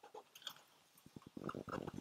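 Diesel semi-truck engine starting: about a second in, a quick run of low pulses as it cranks and catches, carrying on as weaker idle pulses.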